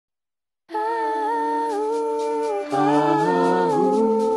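Wordless humming starts after a brief silence, held notes gliding gently in pitch; a lower voice joins partway through, making a two-part harmony.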